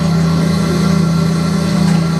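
Live experimental ensemble music: a loud, unbroken low drone with steady higher tones held above it, from electronics and a bowed violin.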